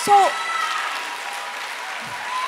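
Large audience applauding steadily, a sustained wash of clapping hands.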